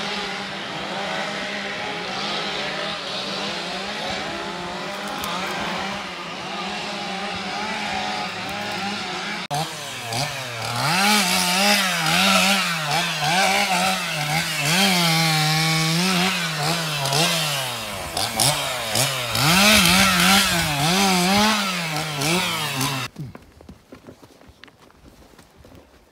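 A chainsaw engine running at high speed with a steady humming buzz, then louder, its pitch rising and falling again and again as the throttle is worked; it stops suddenly near the end.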